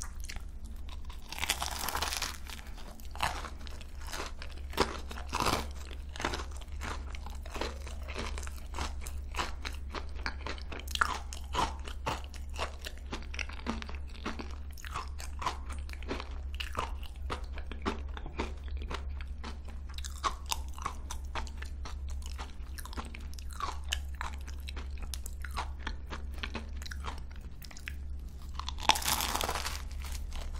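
Close-miked chewing of a croquant choux pastry (크로칸슈) with a crisp cookie crust and custard filling, its crust crunching and crackling throughout. There are louder crunching bites about two seconds in and again near the end. A steady low hum runs underneath.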